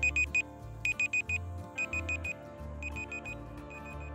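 Electronic alarm-clock-style countdown beeping: quick bursts of about four high beeps, about once a second, over quiet background music, marking a quiz timer running down.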